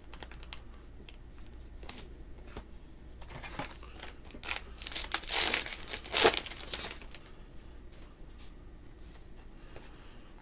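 Foil wrapper of a Panini Contenders football card pack being torn open and crinkled, loudest between about five and six and a half seconds in, with scattered light clicks before it.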